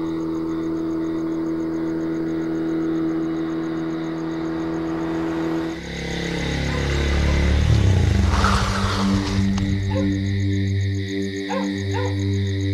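A drawn-out musical drone, then about six seconds in a motorcycle engine comes in, its pitch falling as the bike slows to a stop, with a brief hiss near the end of the slowdown. Music carries on after it.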